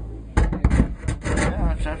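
A voice talking over rubbing and knocking handling noise, starting about a third of a second in; no guitar is being played in this moment.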